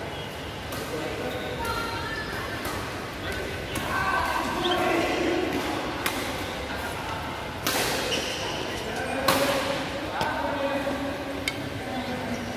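Badminton rackets striking a shuttlecock: a handful of sharp cracks spread through the rally, the two loudest about two-thirds of the way through and under two seconds apart, with people talking in the background.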